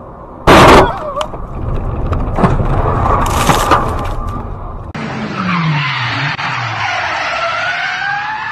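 A very loud sudden bang about half a second in, followed by car and road noise with a few sharper cracks. About five seconds in it changes to a car skidding, its tyres squealing in wavering pitches over its engine note, which drops in pitch.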